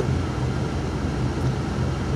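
Steady hum and rush inside a car with the engine running.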